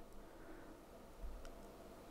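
Near silence: room tone with a faint low hum, broken by one small tick a little past halfway.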